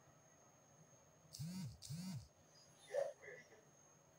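A man's voice making two short wordless vocal sounds in quick succession, each rising and then falling in pitch, followed by a brief click about three seconds in.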